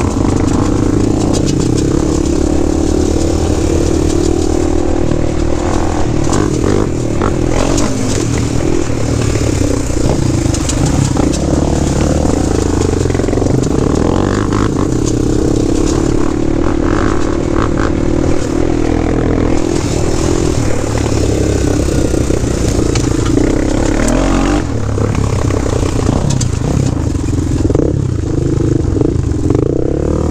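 Honda 400EX quad's single-cylinder four-stroke engine running under changing throttle, its pitch rising and falling. Knocks and clatter come from the machine bouncing over rocks.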